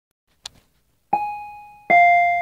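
Two-note 'ding-dong' chime of the kind that comes before an airliner cabin announcement. A higher note sounds about a second in and fades, and a lower note strikes just before the end. A small click comes first, about half a second in.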